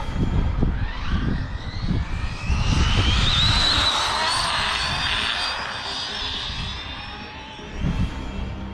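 Arrma Limitless RC car's dual brushless motors on a 6S pack whining at full throttle. The whine rises steeply in pitch over the first few seconds as the car accelerates, then holds high and fades as the car speeds away.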